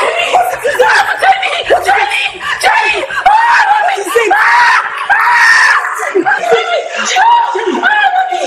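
Two women screaming and shouting at each other in a fight, high-pitched yelled cries following one another without a break.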